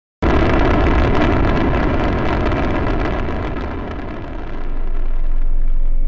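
Rocket liftoff sound effect: a loud, dense rumble starts abruptly just after a moment of silence and dies away over about four seconds. Ambient music with steady held tones and a gong swells in near the end.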